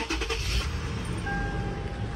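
2016 Toyota 4Runner's 4.0-litre V6 being started: a short noisy burst of the starter and the engine catching in the first half-second or so, then a steady low idle. A thin steady electronic tone comes in about halfway through.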